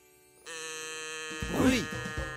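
Cartoon magic sound effect: a steady, held musical tone that starts about half a second in, with a short voice over it near the middle.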